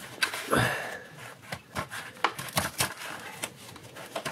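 Clear plastic blister pack and its cardboard backing crackling and clicking in quick irregular snaps as they are pried apart by hand.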